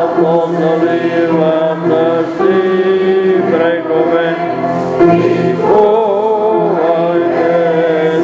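A church congregation singing a hymn together, a slow melody of long held notes.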